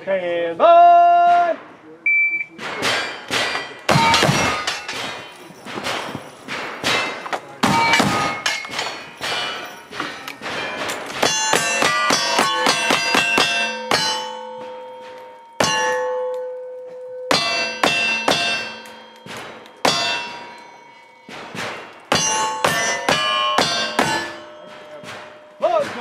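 Rapid black-powder gunshots, first from a rifle and then from a single-action revolver, each answered by the ringing clang of a steel target being hit. The rings last up to a second or two and overlap the next shots.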